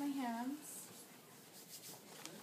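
A brief spoken word, then faint rubbing and rustling of small items being handled.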